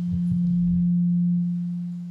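Public-address microphone feedback: a single steady low tone, the loudest sound, swelling slightly and then easing off.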